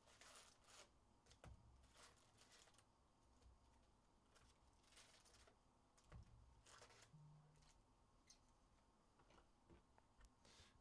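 Near silence, with faint, scattered crinkles of foil trading-card packs being handled and opened by hand.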